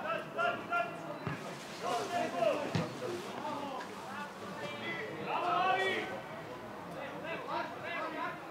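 Men's voices calling and shouting out on an outdoor football pitch, one call louder around the middle, with two short thuds about a second and about three seconds in.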